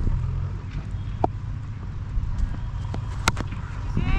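Steady wind rumble on the microphone, then a single sharp crack about three seconds in: a leather cricket ball struck by the bat.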